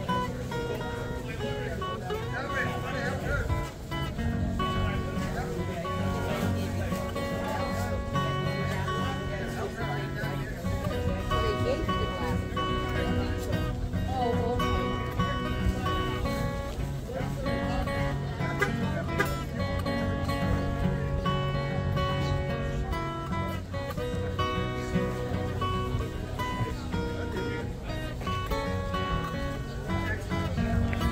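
Acoustic guitar played solo, a continuous tune of sustained notes and chords.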